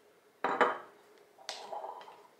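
Two clinks of glassware as an amber glass tincture bottle and a glass graduated cylinder are handled and set down. The first clink, about half a second in, is the louder, with a short ring after it. The second comes about a second later.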